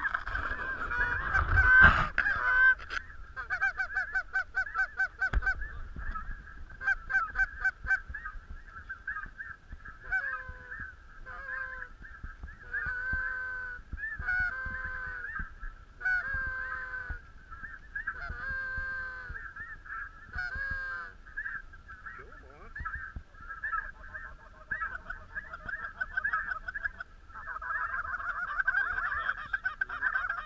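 A flock of snow geese calling in a dense, continuous chorus of high honks, with many single louder calls standing out over it. A heavy knock sounds about two seconds in.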